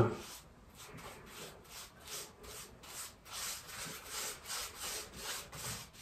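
Paintbrush stroking back and forth over wooden wall panelling: a faint, even swishing, about two to three strokes a second.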